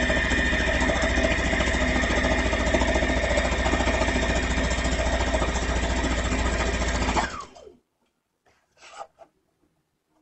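Brother domestic sewing machine running at a steady speed, its needle stitching in a rapid, even rhythm as a folded skirt hem is fed through. It slows and stops about seven and a half seconds in.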